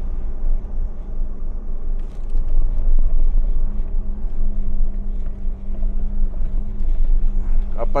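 Inside the cabin of a 2022 Force Gurkha diesel SUV driving on a rough dirt track: a steady low engine hum and road rumble, with light rattles.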